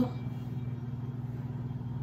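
A steady low mechanical hum, as of a fan or motor running, with no change in pitch or level.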